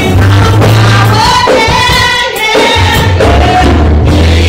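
A gospel praise team of women singing together into microphones, with band accompaniment. In the middle the low accompaniment drops away briefly while the voices hold long notes.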